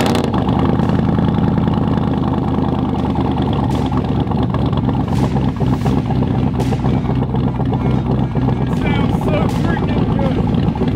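Cammed 5.3 L LS V8 in a lifted Chevy Tahoe idling steadily through its exhaust on a first start. The engine is not yet tuned and runs rich.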